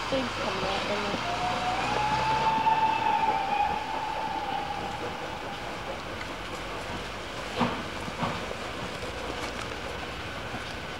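Steam locomotive whistle sounding one long, steady note about a second in, lasting roughly two and a half seconds, over the running noise of a steam-hauled train. Two sharp knocks follow near the end.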